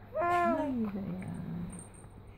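Young infant cooing: one drawn-out vowel-like coo that starts about a quarter second in and slides down in pitch over about a second and a half.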